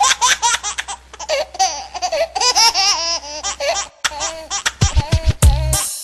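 High-pitched laughter, the voice rising and falling in quick peals, over a low steady hum. About a second before the end, heavy bass drum hits of a hip hop beat come in.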